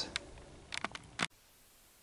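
A few faint, short clicks, then the sound cuts off abruptly about a second and a quarter in, leaving only a very faint hiss.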